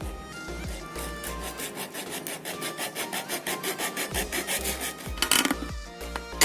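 A thin blade sawing back and forth through a thin-walled plastic cold-drink bottle in quick, even strokes, over background music.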